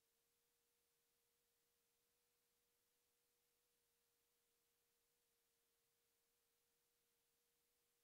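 Near silence: only a very faint steady tone and hiss.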